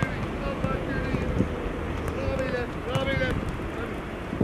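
Footballers' short shouts and calls on a training pitch, over wind noise on the microphone, with a couple of sharp knocks from balls being kicked.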